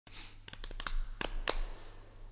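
Quiet handling noise: a few soft clicks and rustles from a musician's hands at a synthesizer and sequencer setup, over a faint steady low electrical hum.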